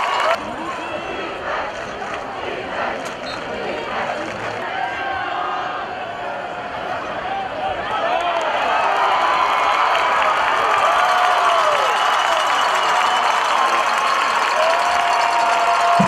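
High school football crowd in the stands cheering and shouting, many voices at once, growing louder about halfway through.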